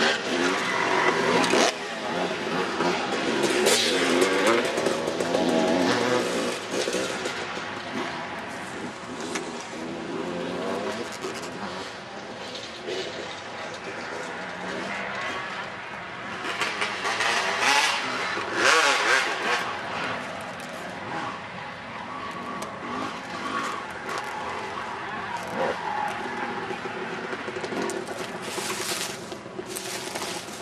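Dirt bike engine running and revving, its pitch rising and falling as the bike rides along a dirt trail, with some louder noisy stretches.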